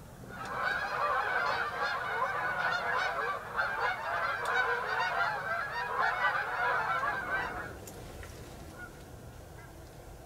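A flock of geese honking, many overlapping calls at once, fading out with a couple of seconds to go.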